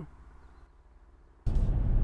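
A faint low hum, then about one and a half seconds in, a sudden switch to the steady low road and engine noise heard inside the cab of a Ford Ranger Wildtrak bi-turbo diesel pickup driving along.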